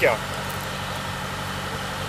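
Steady low mechanical hum, like an engine running, holding even through a pause in the talk; a spoken word ends right at the start.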